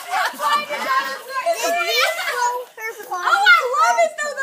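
Several high-pitched voices, children's among them, talking and exclaiming over one another in excited chatter.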